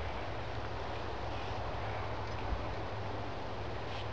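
Steady, even outdoor background hiss with a low hum, and a faint tick about two and a half seconds in.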